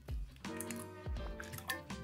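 A raw egg cracked open by hand, its contents dropping into a steel cocktail shaker tin with a soft squish and drip, over quiet background music.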